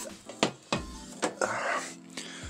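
A few light clicks and knocks, then a short rustle: handling noise close to the microphone.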